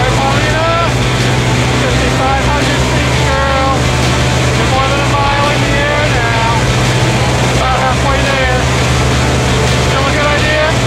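Steady, loud drone of a jump plane's engine and propeller heard from inside the cabin during the climb, with people's voices raised over it.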